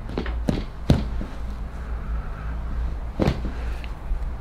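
Foot joints giving a few short, sharp clicks as the foot is pulled and adjusted by hand. The strongest comes just under a second in and another about three seconds in, over a steady low hum. The joint has been through trauma, so it gives no loud pop.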